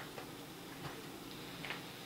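A few faint, irregular ticks from a metal pot of water heating on a stove burner.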